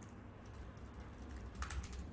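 Faint computer keyboard typing: light keystrokes, with a quick run of them near the end.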